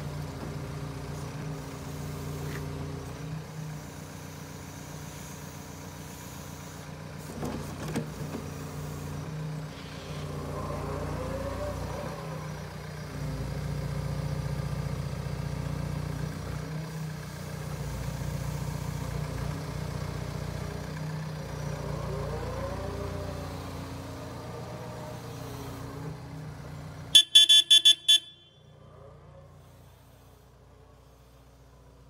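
Wheeled excavator's diesel engine running with its hydraulics as the machine drives and moves its boom, the engine note swelling twice under load with a whine that rises and falls. Near the end comes a quick series of loud, high electronic beeps, after which the engine drops to a much quieter low idle.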